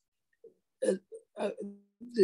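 A man's hesitant speech over a video-call link: a few short "uh" sounds with silent gaps between them.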